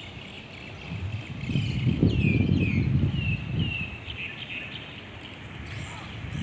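Birds calling outdoors: a run of short, falling chirps through the middle, over a low rumble of wind or distant traffic.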